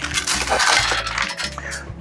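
Crushed ice tipped from a metal scoop onto a heaped metal julep cup, crackling and clinking for about a second, then thinning out.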